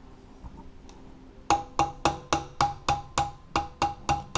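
Hammer tapping a 1/16-inch pin punch to drive out an AR-15's forward assist pin. The taps start about a second and a half in and come evenly, about four a second, each with a short metallic ring.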